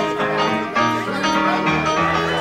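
Band music, a Dixieland-style jazz band with piano and a plucked string instrument such as banjo, playing steadily with notes changing every fraction of a second.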